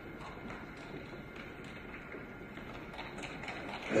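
Faint, irregular clicks of several pairs of high-heeled shoes walking across a wooden stage floor, with quiet room hum behind them.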